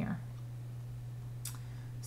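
A single short click about one and a half seconds in, as from a computer mouse, over a low steady hum.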